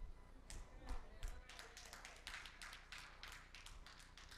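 Faint, irregular light taps or clicks, several a second, over a low background hum.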